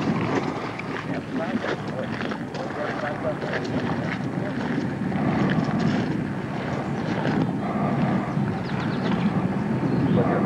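Indistinct voices of people talking over a steady low rumble, which grows a little louder about halfway through.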